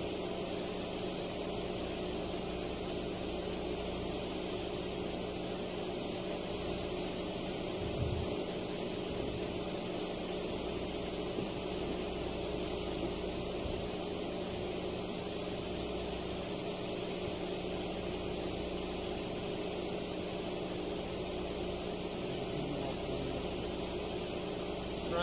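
A steady machine hum with an even hiss, unchanging throughout, with one faint low thump about eight seconds in.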